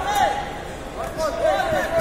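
Several voices shouting and calling out at once from around the cage, overlapping so that no single words stand out, in a large hall.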